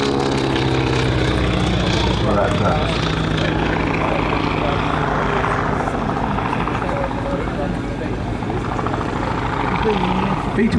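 Boeing P-26 Peashooter's Pratt & Whitney Wasp radial engine in a flypast, its pitch falling over the first couple of seconds as it passes, then a steady drone.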